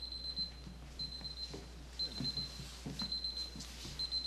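Electronic alarm beeping: a high-pitched, rapidly pulsed beep lasting about half a second, repeating once a second, over faint shuffling and knocks.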